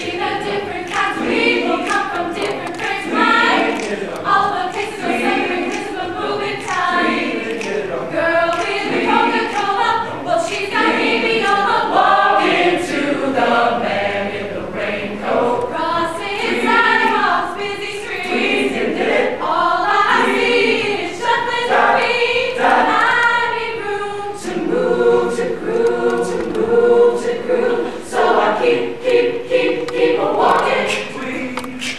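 Mixed-voice choir singing a cappella, with short sharp clicks running through the singing. About four-fifths of the way in, the voices settle into a long held chord.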